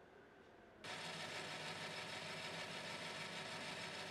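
Workshop band saw motor running with a steady hum and hiss. It comes in suddenly about a second in, after faint room sound.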